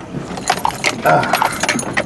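Keys jingling and small metal parts rattling inside a pickup's cab as it bounces slowly over a rough dirt road, with quick clinks and brief metallic rings over a low rumble from the truck.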